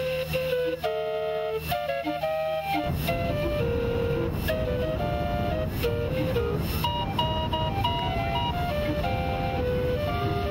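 Calliope playing a melody of steady, piping notes. A steady low rumble joins it about three seconds in.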